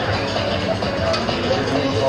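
Music playing steadily, with indistinct voices in the background.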